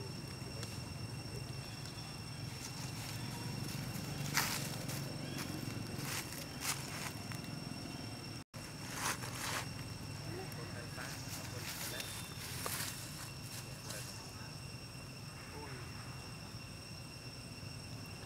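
Forest ambience: a steady low hum and a few thin steady high tones, broken by several short rustles or crunches, the loudest about four seconds in and just after nine seconds, with a brief dropout near the middle.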